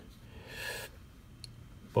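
A short intake of breath, followed by a faint single tick about a second and a half in.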